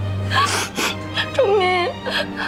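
A woman crying: two sharp, gasping in-breaths about half a second in, then a short wavering wail near the end, over background music.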